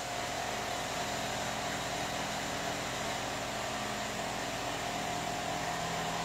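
Steady background hum and hiss of room noise, with faint steady tones running through it.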